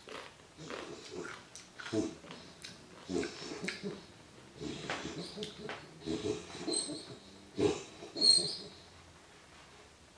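A puppy making a run of rough, irregular wheezing and snorting breaths that stops about nine seconds in. It is not ordinary snoring: it sounds as if he is having a hard time breathing.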